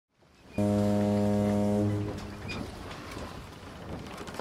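A single low, steady horn blast about a second and a half long, starting half a second in and stopping abruptly, followed by a fainter noisy tail.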